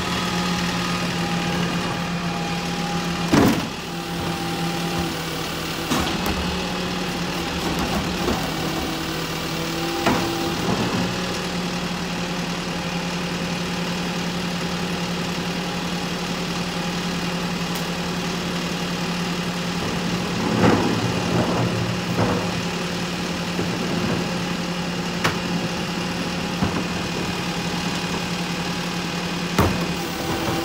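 Rear-loader garbage truck's diesel engine idling steadily, with a few sharp clanks and knocks from the wheeled carts being handled at the rear cart tipper.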